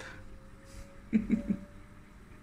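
A woman's short laugh, three quick pulses a little over a second in, over a faint steady hum.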